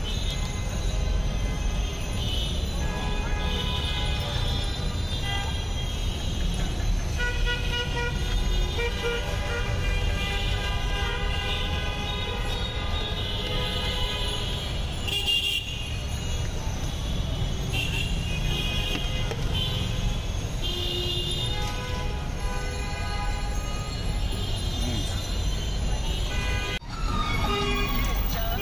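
Street traffic: vehicle horns sounding again and again, often several at once, over a steady engine rumble.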